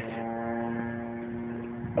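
Steady droning hum of a distant vehicle engine, holding one pitch and fading slightly.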